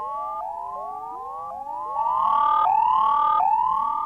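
Electronic sci-fi sound effect in the theremin style: a stream of overlapping rising pitch glides, each under a second. About halfway through, a steady held tone joins in and the whole thing gets louder.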